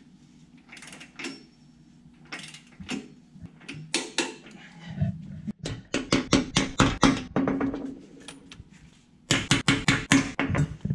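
Hammer blows on the steel anchor bolts and base plate of a two-post car lift, driving the bolts down. A few spaced strikes come first, then a fast run of about five blows a second past the middle, and another run near the end.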